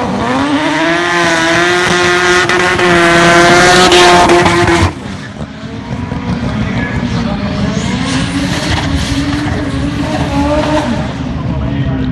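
Mazda RX-3 drag car's engine revved up and held at high revs with tyres squealing, typical of a burnout, dropping away suddenly about five seconds in. The engine then carries on quieter, its pitch rising again as it runs down the strip.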